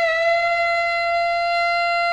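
Heavy psych rock from a 1970 LP: one long, sustained distorted electric guitar note held at a single steady pitch, its slight waver settling just after the start.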